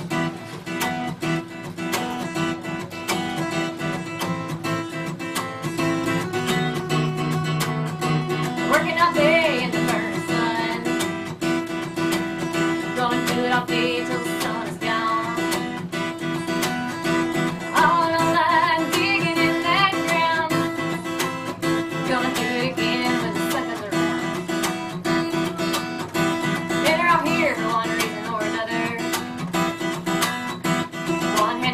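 Steel-string acoustic guitar strummed with a credit card in place of a pick, playing a steady country accompaniment. A woman's singing voice comes in with short phrases several times over it.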